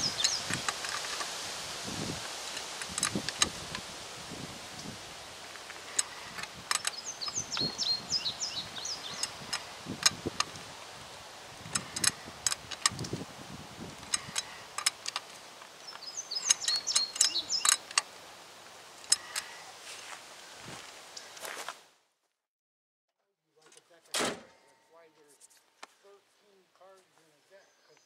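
Ratchet wrench clicking in short bursts and single clicks as the lug nuts on a Jeep Cherokee's wheel are worked, with a bird trilling now and then over outdoor hiss. The sound cuts out about 22 seconds in, followed by a single thump.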